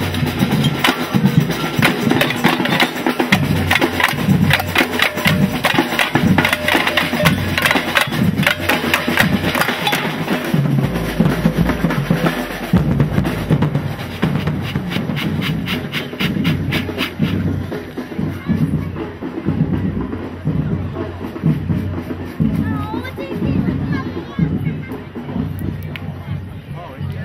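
A marching drum band playing a fast, steady rhythm on drums, which grows fainter after about two-thirds of the way through.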